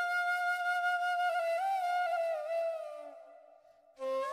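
Flute-like intro music: one long held note that wavers slightly in pitch midway, then fades away near the end.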